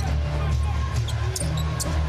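Basketball dribbled on a hardwood court during play, over arena music with a steady bass line.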